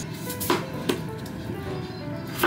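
Kitchen knife slicing a peeled potato on a cutting board: two chops close together, the blade knocking on the board.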